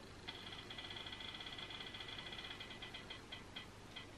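Spinner-wheel app on a smartphone ticking as its wheel spins: a fast, faint run of small electronic ticks that starts just after the beginning, then slows to a few spaced ticks near the end as the wheel comes to rest.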